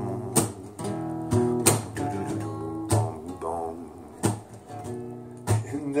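Acoustic guitar strumming chords, with an accented strum about every second and a bit.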